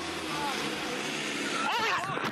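Steady street noise with people's voices from a phone recording, and a raised voice calling out briefly near the end.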